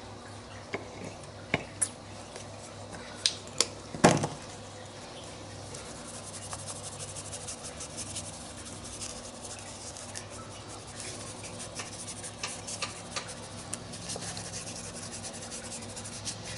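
Small paintbrush scrubbing acrylic paint onto a textured, gessoed paper journal page: a soft, steady rubbing and scratching. A few light clicks and one louder knock come in the first four seconds.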